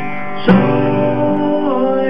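A man singing held notes to his own strummed acoustic guitar, with a sharp strum about half a second in.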